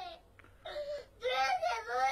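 A young child's high-pitched whimpering cry, in two wavering sobs, the second longer.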